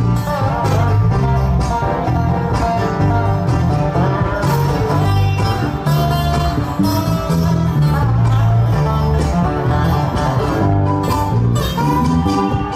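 Live string band playing an instrumental break of a country song: acoustic guitar strumming and plucked-string lead over a steady bass line, with no singing.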